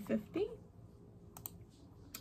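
Two quick clicks from a laptop, close together about a second and a half in, following a few words of speech.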